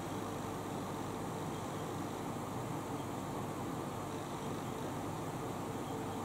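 Electric fan running: a steady, even hiss with a faint low hum.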